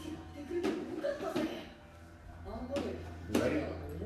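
Indistinct speech with a few light taps, over a steady low hum.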